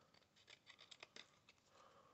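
Small precision scissors (Tonic Studios) snipping thin card, a quick run of about six or seven faint snips in the first second and a half, as a corner is trimmed into a slight curve.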